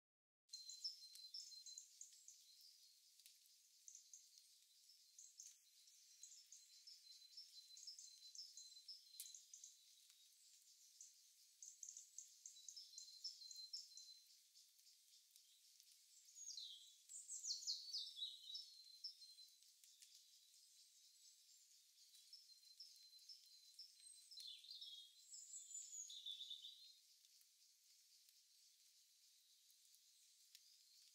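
Faint birdsong: small birds chirping and trilling in quick repeated notes, with a louder run of falling notes about halfway through.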